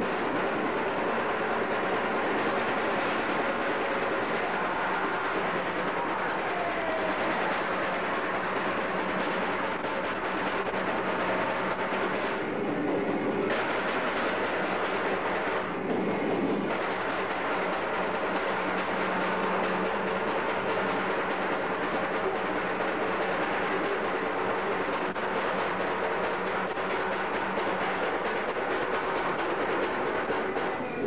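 Lo-fi raw black metal from a cassette demo: a dense wall of distorted guitar and drums, its treble briefly dropping out about twelve and again about sixteen seconds in.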